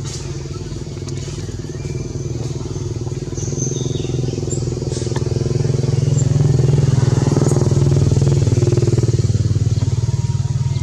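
An engine running steadily with an even low drone, growing louder over the first six seconds and easing off slightly near the end, like a motor vehicle drawing near.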